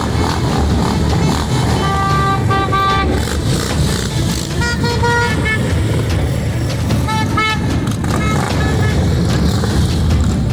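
Motorcycle engines running as a line of bikes passes, with horns sounding in short, repeated toots several times, starting about two seconds in.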